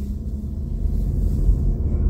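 Car driving at road speed, heard from inside the cabin: a steady low rumble of tyres and engine.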